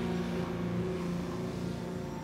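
Cartoon soundtrack: a steady, held low drone with an even rushing hiss over it.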